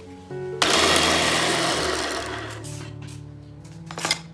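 Small electric food processor running, its blade chopping shallots, garlic and candlenuts into a paste. It starts with a loud whir about half a second in and fades away over the next two seconds.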